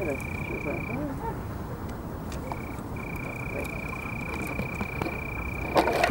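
A cheap Nokia Windows phone drops onto pavement near the end and clatters apart, its case and battery coming off. Before that, a steady high-pitched tone runs on, dropping out for about two seconds, over faint voices.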